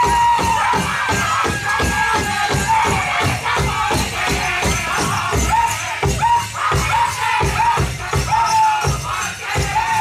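Powwow drum group: a large drum struck in a fast, steady beat under high-pitched, wavering group singing.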